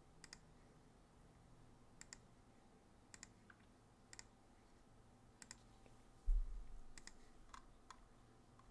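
Faint, scattered sharp clicks, roughly one a second and several in quick pairs, with a single low thump about six seconds in that is the loudest sound.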